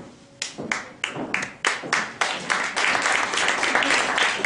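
Audience applause: a few separate claps about half a second in, thickening into dense, steady clapping by about two seconds.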